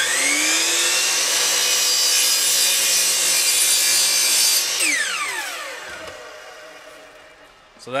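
Miter saw motor spinning up and cutting through plywood at a 45-degree angle for about four and a half seconds. The trigger is then released and the blade winds down with a falling whine over about three seconds.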